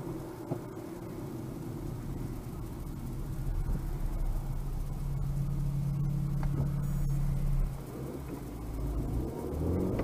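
Car engine and road noise heard from inside the cabin through a windshield dashcam's microphone: a steady low rumble, with the engine's hum growing louder from about three and a half seconds in and dropping away near eight seconds.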